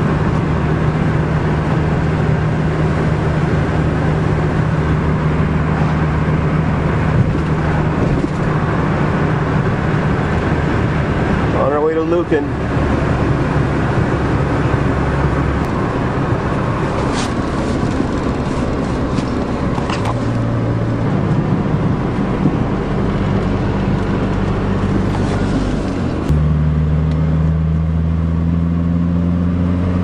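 Diesel van engine and road noise heard from inside the cab, a steady drone while cruising in fifth gear. About 26 seconds in, the engine note steps up, grows louder and climbs slightly as the turbo kicks in.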